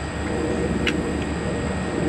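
A steady low background rumble with a single faint click about a second in.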